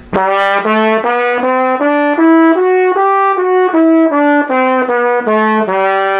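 Trumpet playing an A major scale from low A up an octave and back down, evenly, a little over two notes a second, ending on a held low A. The third valve slide is kicked out for the low C sharp and D to bring those naturally sharp notes into tune.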